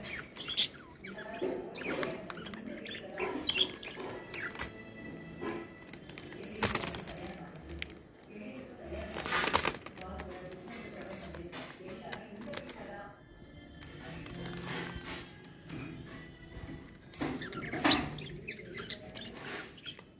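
Budgerigars chirping and chattering, with a loud flutter of wings about halfway through as one flies close by.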